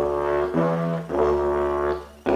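Didgeridoo played with a steady low drone, switched into the higher overblown toot note and back, the note changing about every half second: a demonstration of the drone-to-toot transition.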